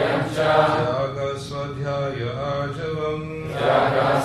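Sanskrit verse being chanted in call and response: a male leader's voice and a group of voices repeating the lines to a steady melody, with clearer held notes in the middle.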